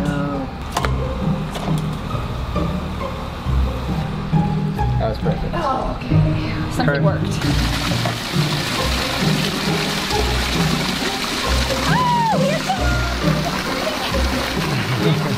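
Background music with a steady beat; about halfway in, a steady rush of splashing water starts and carries on over it.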